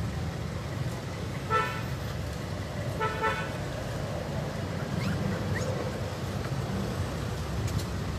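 Two short, steady tooting tones, like a vehicle horn, about a second and a half apart, over a steady low rumble.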